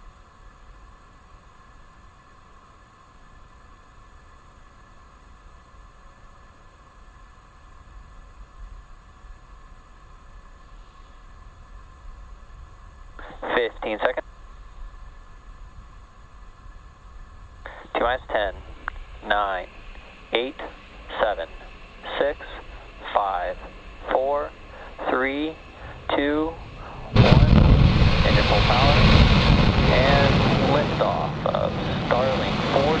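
Falcon 9 first stage's nine Merlin 1D engines igniting at liftoff: a sudden loud, dense roar starting near the end and running on as the rocket leaves the pad.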